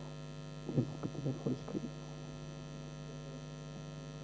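Steady electrical mains hum from the microphone and PA system. About a second in comes a short cluster of faint, muffled sounds close to the microphone.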